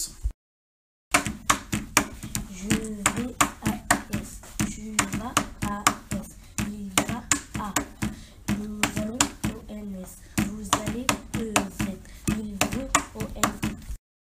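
A voice singing the present-tense conjugation of the French verb 'aller' ('tu vas'…), keeping time with a steady run of hand claps, starting about a second in.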